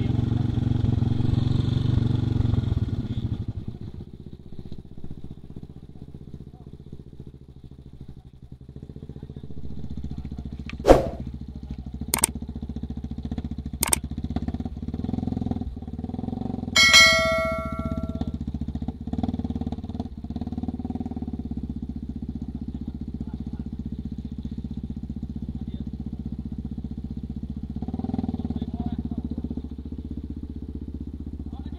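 Off-road trail motorcycles running at idle: louder for the first few seconds, then a steady low hum. Three sharp clicks come between about eleven and fourteen seconds in, and a brief high tone sounds about seventeen seconds in.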